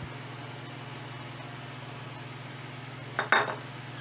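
A single dish clink about three seconds in, as a small ceramic bowl is set down after pouring beaten eggs, over a steady low hum.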